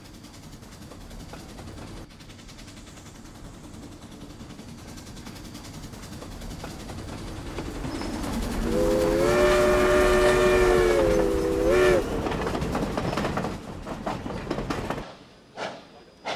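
A train approaching and growing steadily louder with a low rumble. Partway through, the locomotive blows one long chord-like whistle of about three seconds, which rises briefly in pitch as it ends. The train sound cuts off suddenly near the end.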